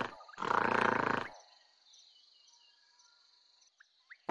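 Gorilla growling: the end of one rough growl, then a second growl about a second long that stops about a second and a half in. This is the contented growl gorillas make when they are happy.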